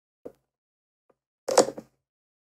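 AI-generated 'opening bag' sound effect played back: a faint click near the start, then a short crackling rustle of a bag being opened about one and a half seconds in.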